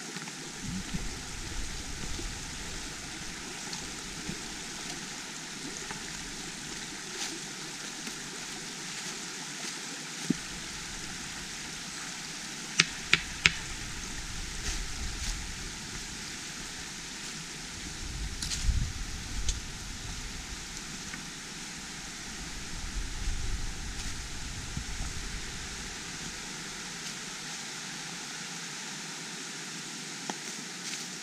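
Steady rush of a shallow stream running over rock, with intermittent low rumbles and three sharp clicks in quick succession about halfway through.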